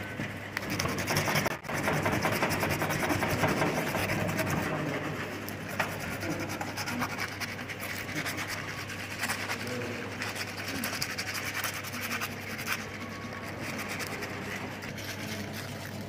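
Sandpaper rubbed rapidly back and forth over the end of a dried bone, a steady dense scratching with a brief break about one and a half seconds in. This is the sanding that smooths the bone's articular ends after drying.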